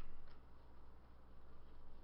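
Quiet room tone with a steady low hum and a single faint click about a third of a second in.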